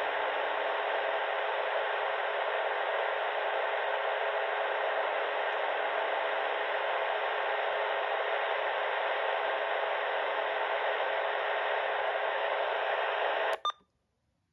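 Uniden BC125AT scanner stopped on a narrowband FM transmission on 421.25 MHz carrying a 179.9 Hz CTCSS tone, playing a steady hiss-like signal with no speech. It starts suddenly and cuts off abruptly near the end, with a brief blip as the transmission drops.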